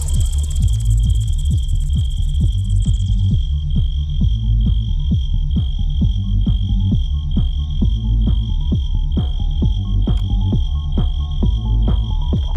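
UK garage / bassline dance track playing in a DJ mix: heavy bass under a steady, even beat, with a held high-pitched synth tone pulsing over it. The highest frequencies drop away about three seconds in.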